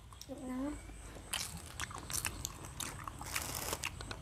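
Eating close to the microphone: bites into crusty bread and crunchy chewing. A run of short crackly clicks starts about a second in and grows denser toward the end.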